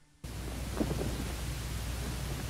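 Steady analogue tape hiss with a low hum from an old film soundtrack, cutting in suddenly about a quarter second in, with a few soft crackles about a second in.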